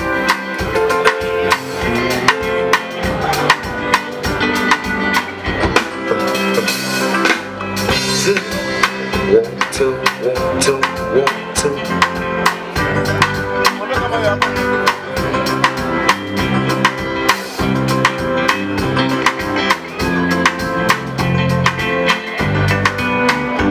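A live band playing, with a drum kit keeping a steady beat under electric guitar and other sustained notes.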